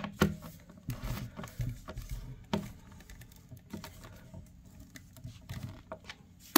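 Hand screwdriver tightening a metal cam lock in a particleboard bookcase panel: scattered small clicks and knocks of the bit and fastener at uneven intervals.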